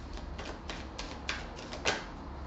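A tarot deck being shuffled by hand: a quick, irregular run of card snaps and slaps, the loudest near the end.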